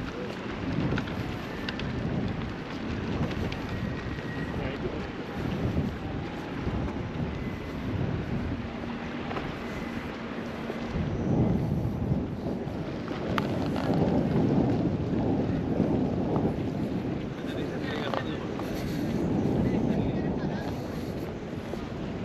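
Outdoor street ambience heard through a moving action camera: wind buffeting the microphone in uneven gusts, with passers-by's voices and traffic in the background.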